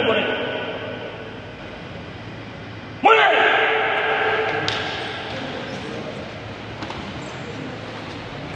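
A loud, drawn-out shout in karate drill, starting about three seconds in and dying away in the long echo of a large hard-floored hall.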